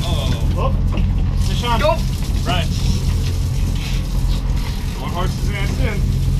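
Charter fishing boat's engine running at a steady low drone, with indistinct voices of people on deck over it.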